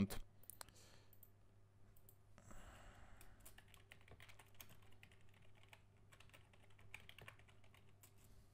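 Faint, scattered clicks of a computer keyboard over a low steady hum, with a short soft rush of noise about two and a half seconds in.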